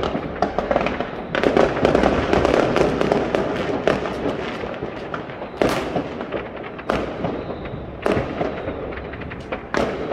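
Many fireworks and firecrackers going off at once in a continuous crackle of bangs. The crackle is thickest in the first few seconds, and single louder bangs stand out about six, seven and eight seconds in.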